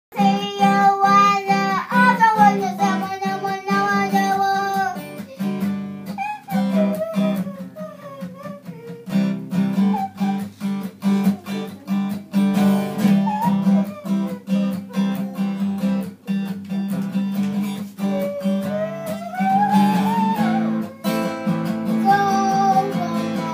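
Acoustic guitar strummed in a steady rhythm, with a child singing along over it.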